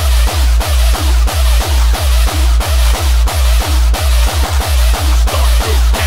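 Hardcore gabber track: a heavy distorted kick drum hitting about three times a second, with a quick roll of kicks about four and a half seconds in.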